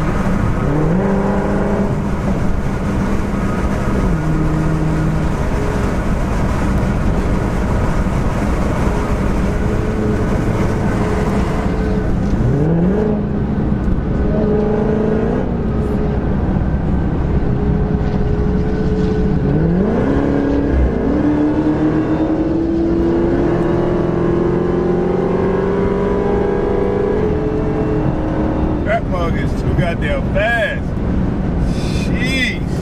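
Supercharged 6.2-litre HEMI V8 of a widebody Dodge Charger Hellcat heard from inside the cabin at highway speed, with road noise underneath. The engine pitch climbs hard under acceleration and drops back several times, then climbs slowly and steadily near the end.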